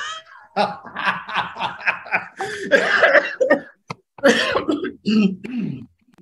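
A man laughing hard in a long run of bursts, broken by coughing.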